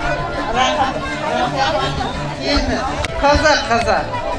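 Several women talking at once in a crowd: overlapping speech and chatter.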